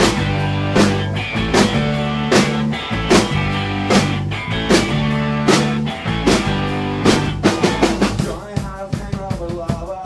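A rock band playing live: sustained electric guitar and bass chords with drum hits on a steady beat about every 0.8 s. A quick run of drum hits comes around seven and a half seconds in, after which the playing turns sparser and a little quieter.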